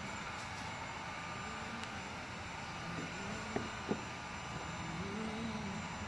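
Steady room hum, with faint background music coming in about halfway through and two light clicks shortly after.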